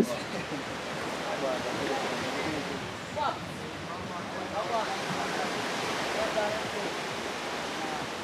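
Steady rushing outdoor background noise, with faint distant voices now and then.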